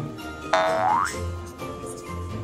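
A cartoon sound effect: a single short pitched glide rising in pitch, about half a second in, over light background music with a low bass line.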